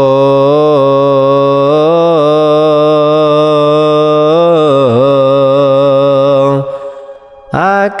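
A man chanting Ethiopian Orthodox liturgical chant, holding one long, slowly ornamented note that breaks off about six and a half seconds in. After a short breath the chant starts again with a swooping rise near the end.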